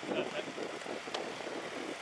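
Wind on the microphone over stopped traffic, with faint voices and a single sharp click a little past the middle.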